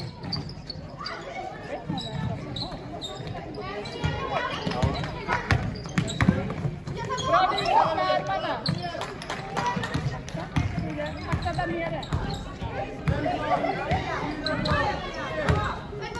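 A basketball bouncing repeatedly on a sports hall floor during play, with players' voices calling out across the hall.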